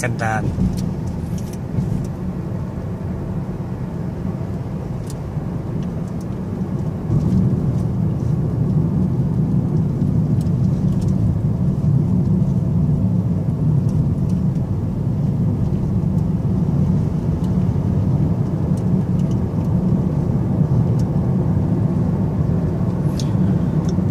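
Steady low road and engine rumble inside a moving car's cabin, growing louder about seven seconds in.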